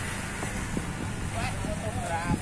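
Roadside street ambience: a steady hum of passing traffic and motorbikes, with indistinct chatter from a group of people nearby and a short burst of a voice about halfway through.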